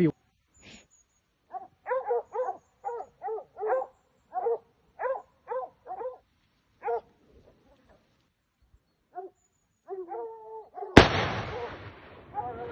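Hunting dogs barking in a run of short, evenly spaced barks as they chase a wild boar. About eleven seconds in comes a single loud gunshot with a long echo.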